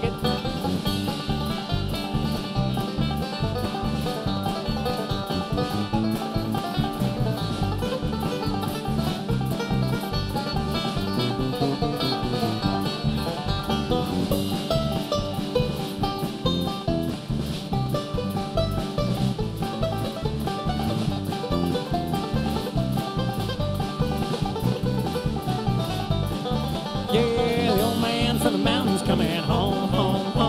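Live country-bluegrass band playing an instrumental break with acoustic guitar, electric bass, banjo and drums over a steady beat. Singing comes back in near the end.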